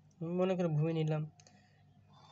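A voice speaking for about a second, then a faint single click of a metal compass against a steel ruler as its width is set.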